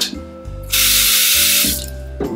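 Single-lever mixer tap turned on at full flow, water gushing hard into the sink for about a second, then shut off: the strong water pressure the tap is being tested for.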